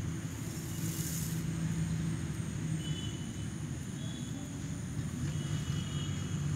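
Steady low outdoor rumble, with a brief hiss about a second in and a few faint high chirps later on.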